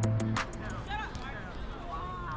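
Background music with a drum beat stops about half a second in. It gives way to high-pitched children's voices calling out.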